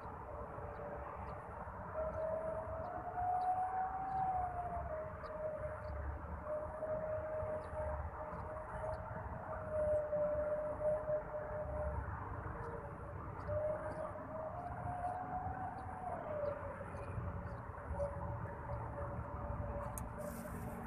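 A siren sounding as one wavering tone that slowly rises and falls. It starts about two seconds in and has a short break past the middle.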